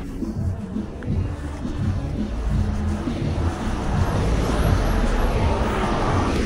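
City street traffic, with a low rumble and rushing noise that grows louder over the second half as a heavy vehicle approaches.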